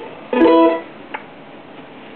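A mandolin chord strummed once about a third of a second in, ringing briefly before fading, followed by a faint click.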